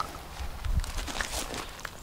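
Handling noise from a camera being picked up and carried by hand: a low rumble and soft knocks on its built-in microphone, with faint steps on gravel.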